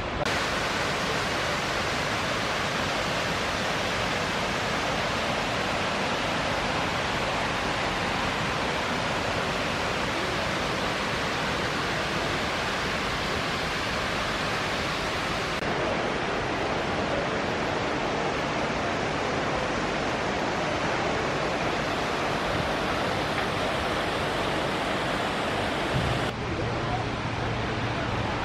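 Steady rushing of the Dim River's flowing water, an even unbroken noise. Near the end a low steady hum joins it.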